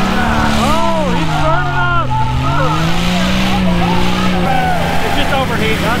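Jeep Cherokee XJ engine running at high revs under heavy load while pulling through sand. Its pitch sags, climbs back and then fades out about four and a half seconds in. A crowd shouts and cheers over it.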